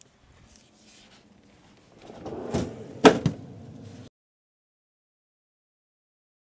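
Handling noise as a metal sheet tray of bun dough is picked up and moved, with a sharp knock about three seconds in and a lighter one right after; the sound then cuts out abruptly.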